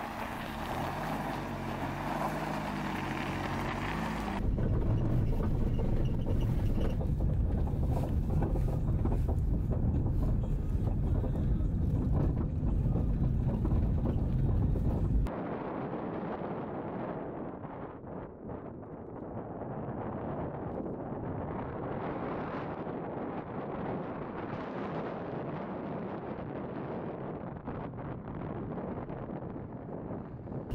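A small hatchback car's engine running, turning into a louder low rumble about four seconds in. About halfway through it cuts off suddenly and gives way to steady wind buffeting the microphone, rising and falling in gusts.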